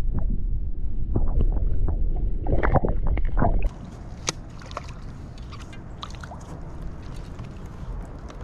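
Water splashing and sloshing around a camera held at the waterline as a hooked bass is brought up at the surface, with a heavy low rumble on the microphone. Just over halfway through it cuts abruptly to a quieter hiss with scattered light clicks.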